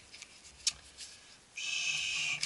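Plastic handling of a Konica Minolta DR-311 drum unit's charger-cleaning rod: one sharp click, then near the end a steady high scraping squeak as the rod slides along its plastic housing.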